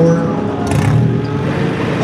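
A car engine running, with a short louder burst about three quarters of a second in.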